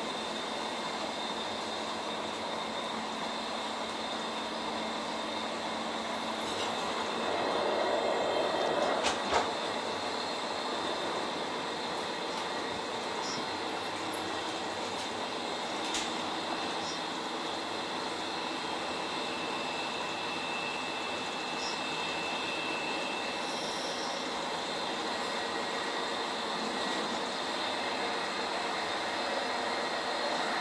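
Cabin noise of a Roslagsbanan narrow-gauge electric commuter train running along the line, a steady rolling rumble and hiss. It swells for a couple of seconds about eight seconds in and ends in a pair of sharp knocks, with a single click a little later.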